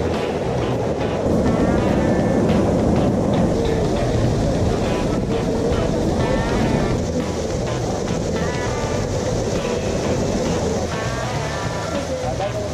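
Steady rush of water from the Bigăr waterfall and its rocky forest stream, with snatches of people's voices over it.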